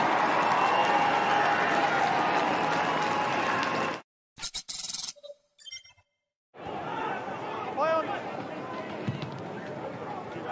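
Stadium crowd noise after a goal, cutting off abruptly about four seconds in. A short broadcast transition sound effect follows with a brief tone, then quieter crowd ambience resumes after a moment of silence.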